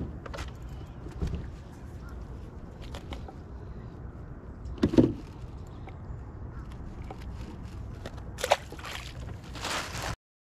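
Handling noise of unhooking a small fish and working the tackle in a plastic kayak: scattered knocks and rustles over a low steady rumble, the loudest knock about five seconds in, and a brief rushing noise near the end.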